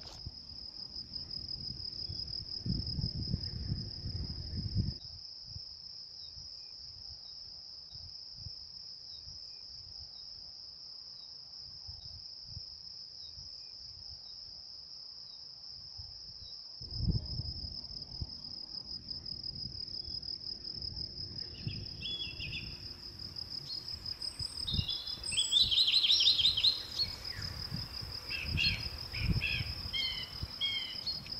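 Crickets chirping in a steady, high-pitched pulsing trill throughout, with birds chirping in the last third, loudest near the end. A low rumble on the microphone comes and goes: for the first few seconds and again from a little past halfway.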